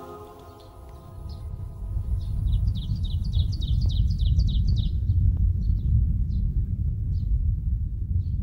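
Film soundtrack: a held musical chord fades out over the first few seconds while a deep, low rumbling drone swells up and holds as the loudest sound. A rapid run of high bird-like chirps sounds briefly a couple of seconds in.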